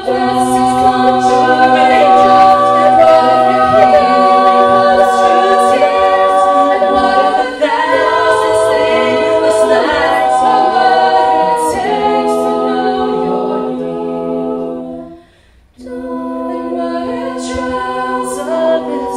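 Mixed-voice a cappella group singing sustained chords. The voices break off briefly a little past three quarters of the way through, then come back in.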